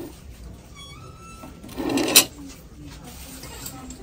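Plastic breakfast portions being handled on a plate: a short rustle about two seconds in that ends in a sharp knock, after a brief faint tone about a second in.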